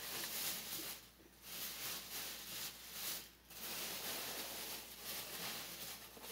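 Rustling and crinkling of shopping items and their packaging being handled, with two brief pauses.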